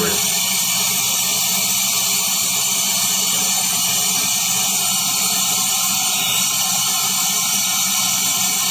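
Steady, loud rush of compressed air being blown into a sealed hull, with a low hum underneath: the hull is being pressurized for a pressure test.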